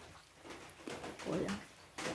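A single short, quiet exclamation "hoy" just past the middle, falling in pitch, over faint room sound.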